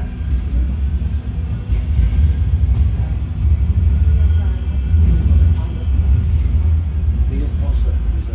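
A Bombardier M5000 tram running, heard from on board as a deep, steady rumble that grows louder about two seconds in. Faint voices of people talking are heard under it.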